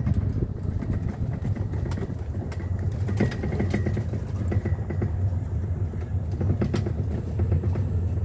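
Golf cart moving along a paved path: a steady low rumble of the ride, with scattered small clicks and rattles.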